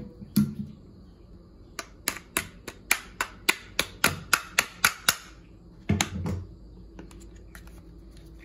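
Pliers clicking against the metal wire pin of a plastic mouse trap: a quick run of about a dozen sharp clicks, three or four a second, lasting about three seconds. A couple of duller knocks follow about six seconds in.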